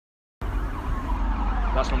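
Emergency vehicle siren wailing, a slow falling tone.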